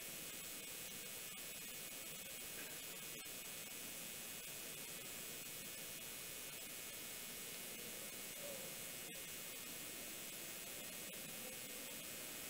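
Faint, steady hiss of static, with a single click about nine seconds in.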